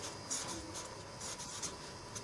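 Handwriting: a few short, scratchy strokes of a pen or marker on a writing surface, quiet and irregular.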